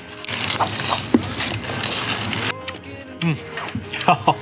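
Aluminium foil crinkling around a roasted sweet potato held in the hands, for about two seconds, with a sharp crackle about a second in.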